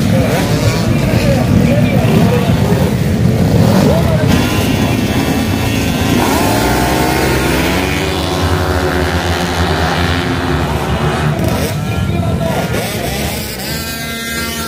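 Several two-stroke racing scooter engines revving together on a starting grid and accelerating as the field pulls away, with voices over them.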